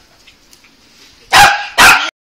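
Small white long-haired dog barking twice, about half a second apart, near the end; before that only faint rustling.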